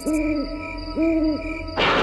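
Owl hooting sound effect: two hoots, the first at the start and the second about a second in, over a spooky background music bed with a regular pulsing tone. Near the end a sudden loud thunder crash comes in as lightning strikes.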